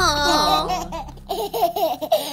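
Cartoon babies laughing: a high squeal sliding down in pitch, then a quick run of short giggles about four a second, starting about a second in.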